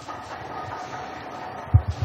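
Lecture-hall audience rapping knuckles on their desks at the end of a lecture, the German way of applauding: a steady hall noise, then a run of dull, irregular knocks starting near the end.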